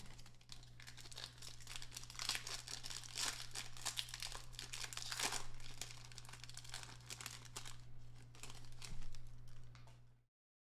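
Foil wrapper of a trading card pack crinkling and tearing as it is ripped open by hand, with cards shuffled between the fingers. The crackling comes in bursts and peaks near the middle, over a steady low hum.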